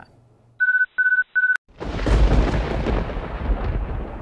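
Three short, identical electronic beeps in quick succession, then a sudden deep rumble of thunder that slowly fades, as an outro sound effect.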